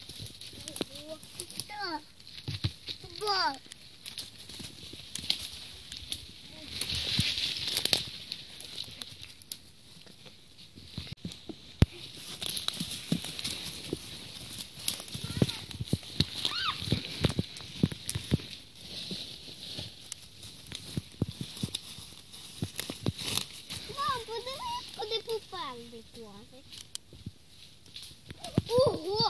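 Footsteps rustling and crunching through dry fallen leaves, an irregular run of crackles and scuffs, with brief children's voices about a second in and again near the end.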